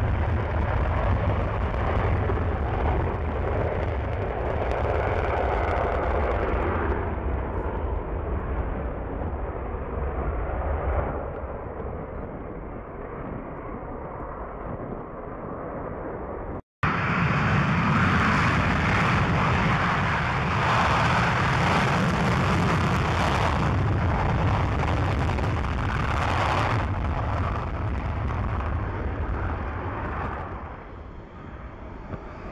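Twin Pratt & Whitney F100 turbofans of F-15 fighters in full afterburner on take-off: loud, steady jet noise that fades somewhat as the first jet climbs away. After a brief cut to silence about two-thirds of the way through, a second jet's afterburner take-off comes in just as loud and begins to fade near the end.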